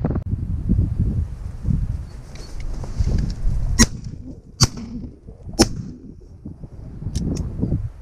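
Three sharp shotgun shots in quick succession about four seconds in, under a second apart, fired at crows, with wind rumbling on the microphone throughout. Two fainter clicks follow near the end.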